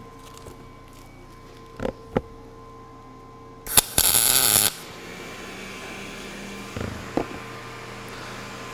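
A single short MIG tack weld: about one second of crackling arc from a Lincoln POWER MIG 210 MP running 0.035 in L-56 wire with 75/25 argon-CO2 gas on 10-gauge mild steel tubing, preceded by two light knocks. When the arc stops, a steady blower hiss continues from the fume extractor, which switches on automatically with the welding voltage.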